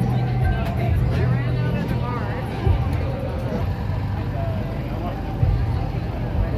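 Crowd chatter from many people, with background music and a steady low hum underneath.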